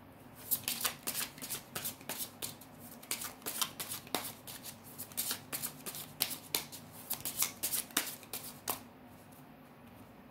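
A deck of tarot cards being shuffled by hand: a quick run of sharp card flicks and snaps lasting about eight seconds, stopping shortly before the end.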